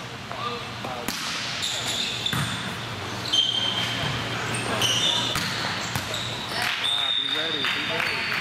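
Volleyball rally on an indoor sport court: sneakers squeaking sharply on the floor again and again, a few sharp smacks of the ball being hit, and players calling out, all with the echo of a large hall.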